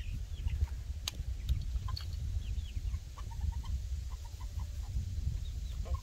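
Young chickens peeping and clucking in short, scattered chirps, with a quicker run of soft notes in the middle. One sharp click comes about a second in, over a steady low rumble.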